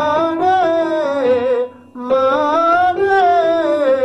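A man singing the vocal-exercise word "money" up and down a five-tone scale, twice, with vibrato on the held notes; a short break about two seconds in.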